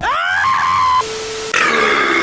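A man screaming: the voice slides up into a long, flat high note, drops to a steady lower note, then breaks into a loud, ragged scream for the last half second.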